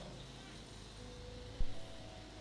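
Quiet hall room tone with a steady low hum and a faint held tone, broken by a single short low thump about one and a half seconds in.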